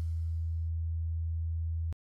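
Steady low-pitched hum under the last faint trace of music, which dies away early on. The hum stops abruptly with a short click just before the end.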